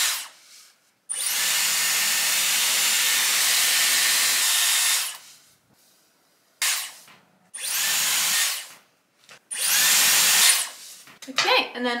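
Dyson Airwrap hair styler running in several separate bursts of blowing air, switched on and off between them. The first run lasts about four seconds; the later ones are shorter.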